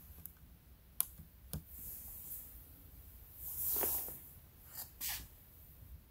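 Mostly quiet, with a sharp click about a second in as the ThinkPad laptop's power button is pressed, then a lighter click and two short breathy hisses.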